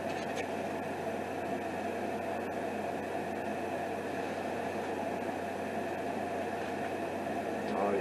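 Steady hissing background noise with a low hum under it, with no distinct events.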